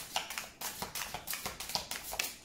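A Starseed Oracle card deck being shuffled by hand: a quick, irregular run of card edges flicking and tapping together.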